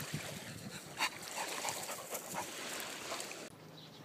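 A dog making small, faint sounds over a steady outdoor hiss, with a few soft clicks and one sharper click about a second in. The background turns quieter shortly before the end.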